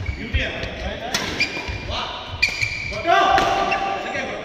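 Badminton doubles rally in a large hall: sharp racket strikes on the shuttlecock and players' footwork, with short squeaks, and a player's shout a little after three seconds in.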